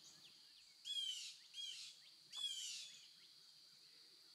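A songbird singing faintly: three short phrases of quick falling notes, about a second in, at two seconds and just before three seconds, over softer high chirps.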